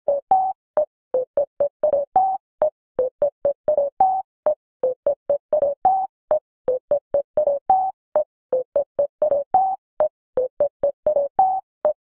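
An electronic synthesizer riff played alone: short, clipped notes, several a second with silence between them, the phrase looping about every two seconds and each loop topped by one higher note.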